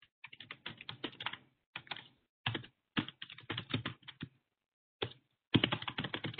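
Typing on a computer keyboard: quick runs of keystrokes broken by short pauses, the loudest run near the end.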